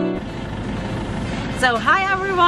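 A short saxophone music sting cuts off right at the start, giving way to a steady outdoor background noise with a low rumble; a woman starts talking near the end.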